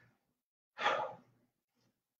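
A man's single heavy breath out, a sigh of exertion about a second in, with a faint second breath near the end, while he holds a plank.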